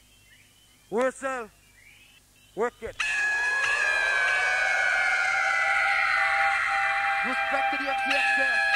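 Live hardcore rave DJ set recorded from tape: a near-silent break with a few short bursts of voice, then about three seconds in the music drops back in abruptly as a loud synth passage, one tone sweeping down while another sweeps up. A voice comes in over the music near the end.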